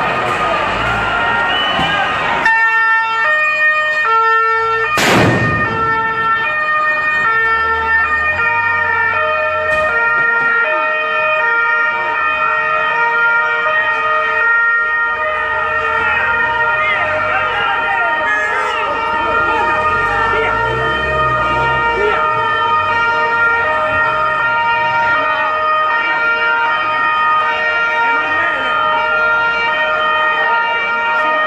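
Two-tone police siren sounding steadily, switching back and forth between a low and a high note, over shouting crowd voices. A single sharp bang comes about five seconds in.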